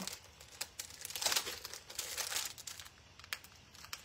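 Clear plastic packaging of a large stamp being handled and opened, giving irregular crinkling rustles with a few sharp clicks.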